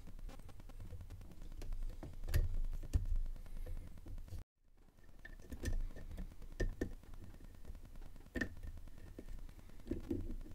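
Faint metal clicks and scrapes of a small pry tool working a circlip around the end of a brass euro cylinder held in a vise, with low handling rumble. A brief moment of dead silence cuts in about halfway through.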